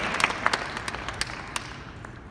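Audience applauding: scattered, irregular claps that thin out and fade away toward the end.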